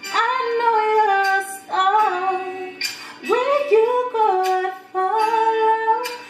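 A woman singing an R&B melody in about four phrases, with held notes that bend and slide in pitch.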